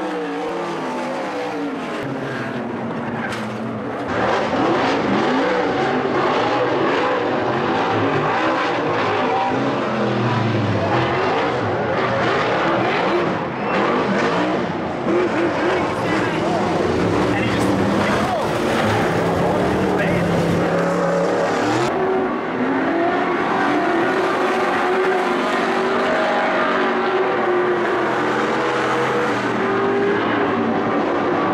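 Speedway race car engines on a dirt oval, several cars revving and running past, their pitch rising and falling. The sound gets louder about four seconds in.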